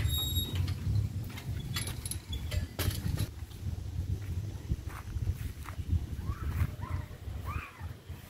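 Irregular low rumble of wind and handling noise on a phone microphone carried by someone walking, with a few sharp clicks in the first few seconds. Several faint short calls rise and fall near the end.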